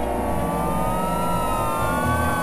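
Layered synthesizer drones. Several tones glide slowly up and down over a dense, choppy low bass.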